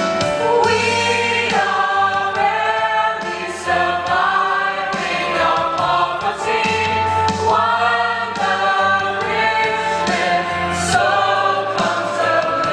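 A stage cast of children and young women singing together as a choir in a musical-theatre song, holding long notes that change pitch every second or so, over a steady low accompaniment.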